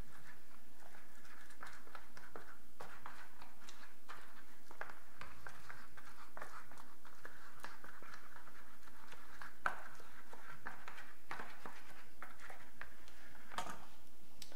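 Pastry brush dabbing and sweeping grease around the cups of a silicone egg bite mold: soft, irregular light taps and brushing scrapes, with one sharper tap a little under ten seconds in.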